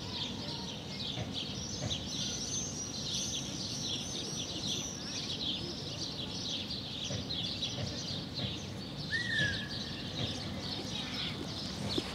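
Small birds chirping and singing continuously over a steady low background hum of outdoor noise, with one lower, falling call about nine seconds in.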